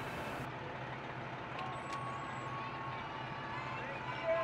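Fire trucks idling at the curb: a steady low engine hum under outdoor street noise, with a faint steady higher tone joining about a second and a half in.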